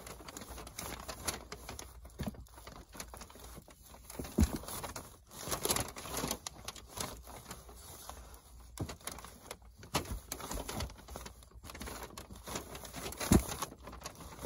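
Rustling and crinkling of a mobile home's plastic underbelly wrap as a flexible yellow gas line is pushed up through it by hand, with scattered light clicks and knocks.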